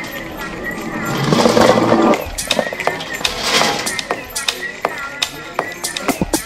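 Voices mixed with music, with a louder stretch of voice between about one and two seconds in, over scattered clicks and knocks.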